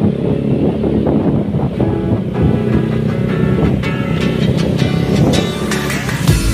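Music with a beat playing over the running engine and road noise of a motorcycle riding along a street. The drum hits become clearer about halfway through.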